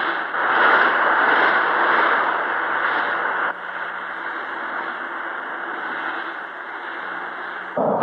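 Cartoon jet sound effect for a flying submarine plane: a steady rushing engine noise. It drops to a lower level about three and a half seconds in and stops just before the end.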